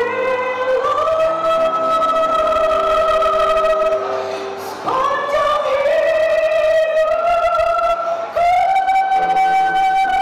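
A woman singing slow, long-held notes into a microphone, the melody stepping up in pitch every few seconds.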